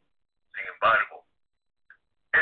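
Speech only: a voice talks briefly in a thin, telephone-like sound, between pauses of silence.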